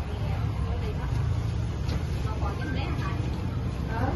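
Epson L805 inkjet printer printing a banner, its print head shuttling across, heard under a steady low rumble and faint voices.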